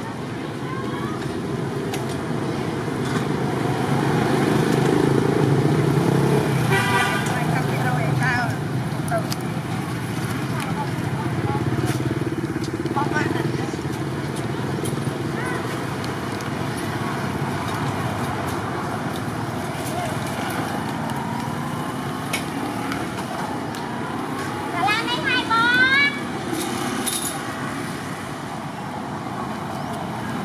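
Outdoor background of indistinct people's voices and road traffic, steady throughout, with a few short rising tones near the end.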